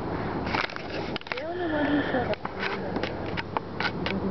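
A man's voice making a short wordless sound about a second and a half in, over a steady low hum, with scattered light clicks.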